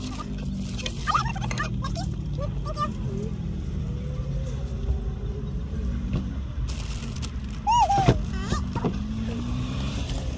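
Steady low rumble of an idling car engine, with passing traffic behind it. Faint scraps of voices come and go, and a short, sharp rising-and-falling squeal or cry sounds about eight seconds in.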